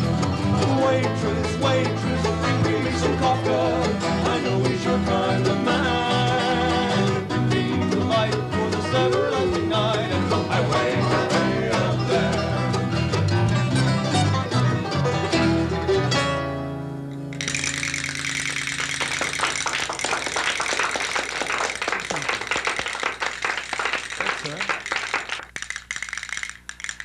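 A country string band of banjo, mandolin, acoustic guitars and electric bass plays the closing instrumental bars of a song and ends on a chord about sixteen seconds in. Applause follows and runs on through the rest.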